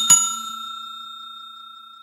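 Notification-bell ding sound effect struck again just after the start, then ringing on and slowly fading. It is the chime that marks the bell icon being clicked in a subscribe animation.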